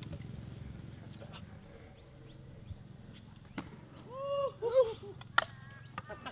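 Stunt scooter's 120 mm hollow-core wheels rolling on a concrete skatepark bowl, a steady rumble that fades as the rider moves away. A few short rising-and-falling cries come about four to five seconds in, followed by a single sharp clack.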